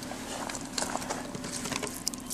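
Footsteps scuffing and crunching on icy ground, heard as scattered irregular clicks, over the steady low hum of a car engine idling.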